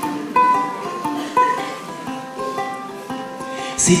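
Ukulele playing the song's introduction: a melody of single plucked notes. A voice comes in singing right at the end.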